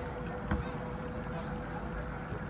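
Outdoor background noise with a faint, steady, even-pitched hum, and a single short click about half a second in.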